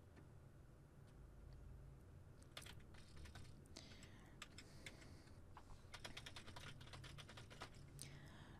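Faint computer keyboard typing: quick, irregular runs of key clicks, sparse at first and busier from a couple of seconds in.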